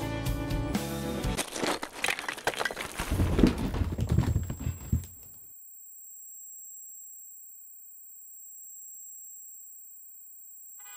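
A song ends about a second in, followed by about four seconds of loud crackling, rumbling noise that stops abruptly. Then only a faint, steady, very high-pitched tone remains.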